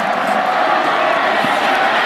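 Steady crowd noise from a large stadium crowd at a football game, heard through the broadcast mix.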